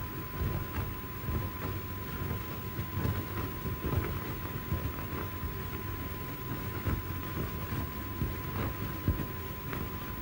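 Surface noise of an old 1930s film soundtrack: a low rumble and hiss with irregular crackles, plus a faint steady high tone. No distinct locomotive sound stands out.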